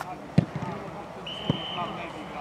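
Two thuds of a football being kicked, about a second apart, the first the louder, among players' shouts on the pitch.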